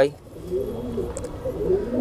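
Domestic pigeons cooing softly in the background, a low wavering murmur.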